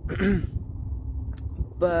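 A man clearing his throat: a short, throaty voiced sound with a falling pitch near the start, over a steady low rumble of wind on the microphone. Speech resumes near the end.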